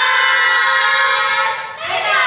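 A group of young women calling out together in unison: one long drawn-out shout held steady for about a second and a half, then a second drawn-out call starting near the end.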